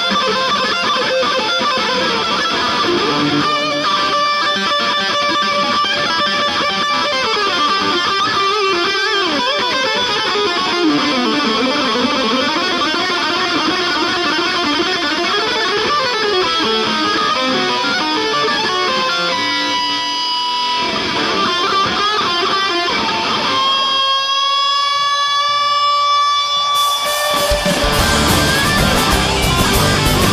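Distorted electric guitar playing a fast lead solo over a live rock band. Near the end the low end drops away and the guitar holds long notes that bend upward.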